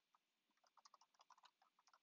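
Faint computer-keyboard typing: a quick run of key clicks, a few at first and then densely from about half a second in.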